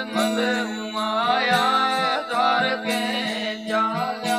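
A man singing a Gujarati devotional bhajan over the steady drone of plucked long-necked tamburas, with short metallic strokes from small hand cymbals keeping the beat.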